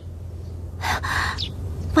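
A young woman's breathy gasp of alarm, about a second in, over a low steady hum.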